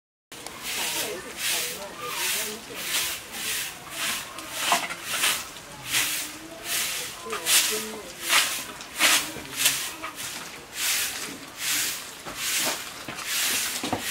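Short grass hand broom sweeping a packed dirt yard: a steady rhythm of swishing strokes, a bit under two a second.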